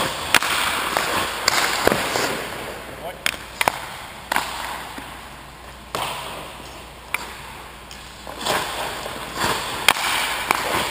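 Hockey goalie's skate blades scraping and leg pads sliding on the ice in repeated bursts of hiss that ring on in the rink, with several sharp cracks of sticks and pucks.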